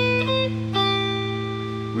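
Clean ESP electric guitar playing a simple melody in A minor: a low note is left ringing while a higher note is picked at the start and another about three-quarters of a second in, both sustaining and slowly fading.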